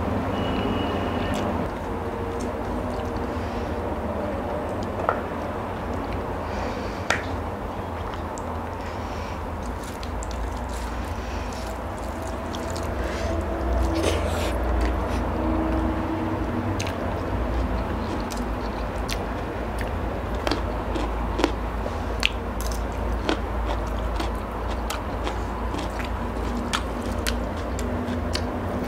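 A person chewing mouthfuls of rice and curry eaten by hand, with scattered sharp clicks over a steady low rumble.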